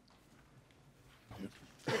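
A man coughing into his fist: faint room tone, then a short cough near the end.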